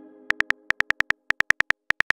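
Simulated keyboard typing clicks from a texting app: short, even ticks about eight a second, starting about a third of a second in, as a message is typed out letter by letter.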